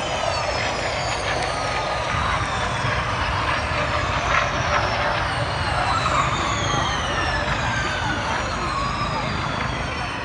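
Formula E electric race cars whining past in a stream on the opening lap, each high motor whine sliding down in pitch as it goes by, over steady crowd noise.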